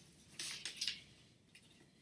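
A brief, soft rustle and scrape about half a second in, from a vinyl LP and its sleeve being handled; otherwise quiet room tone.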